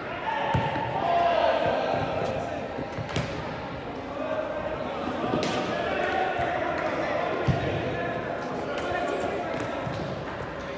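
Soccer ball thumps as it is kicked around an indoor artificial-turf pitch, about three sharp hits spread through, under indistinct calling voices of the players.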